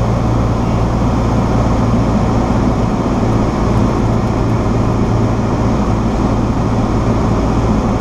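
Cessna 172SP's four-cylinder Lycoming IO-360 engine and propeller droning steadily in cruise flight, heard from inside the cabin.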